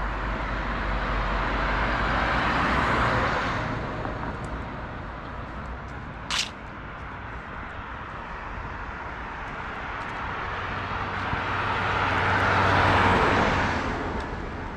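Cars passing on the road alongside: tyre and engine noise swells and fades twice, about three seconds in and again near the end. A single short sharp click sounds about halfway through.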